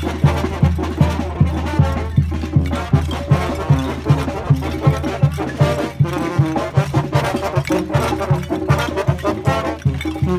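A Mexican brass banda plays a lively tune on the march, with tuba, trombones and trumpets over a steady drum beat.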